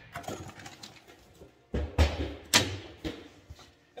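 Handling noise from a machined aluminum fabrication square and its cardboard box on a steel workbench: faint rustles and clicks, then about two seconds in three loud knocks close together.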